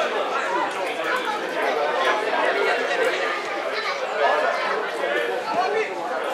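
Spectators chattering, several voices overlapping at once with no single voice standing out.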